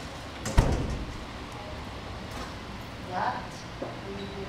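A single sharp thump about half a second in, ringing briefly in a large hall, followed by a short burst of voice near the end.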